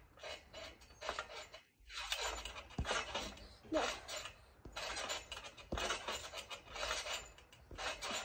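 Trampoline springs creaking and rattling in uneven bursts as someone bounces on the mat, with a couple of low thuds from landings.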